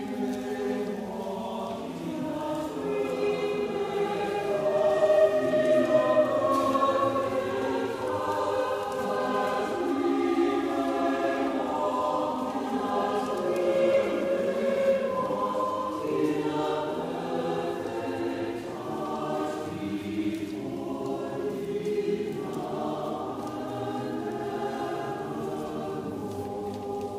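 Mixed church choir of men's and women's voices singing a choral anthem in parts, growing louder a few seconds in.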